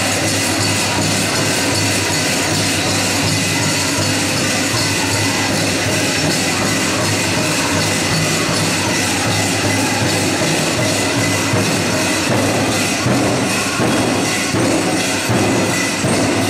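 Pow wow music: a drum song with the dense, steady metallic shimmer of many jingle dress cones as the dancers move, echoing in a gymnasium.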